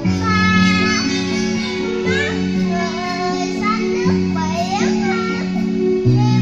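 A child singing a Vietnamese song into a microphone, the voice amplified and sliding with ornamented, wavering notes, over a karaoke backing track with guitar and bass notes that change about every two seconds.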